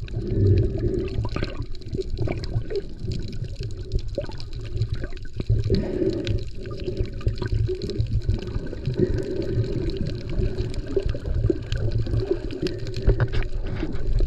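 Muffled underwater water noise around a submerged camera: sloshing and bubbling over steady low noise, with scattered faint clicks.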